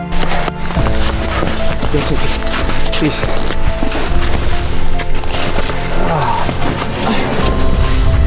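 Boots crunching and scuffing through snow as a few people walk down a slope, an irregular run of steps under background music that plays throughout.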